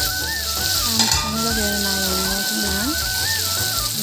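Chicken pieces sizzling as they fry in oil in an iron kadai, a steady hiss, with background music carrying a slow stepped melody over it.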